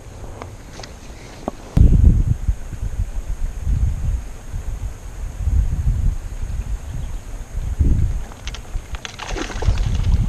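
Wind buffeting the microphone in repeated low rumbles, with a sudden thump about two seconds in.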